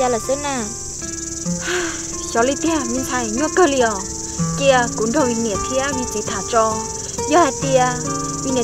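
Insects droning in a steady, unbroken high-pitched band, with spoken dialogue and background music over it.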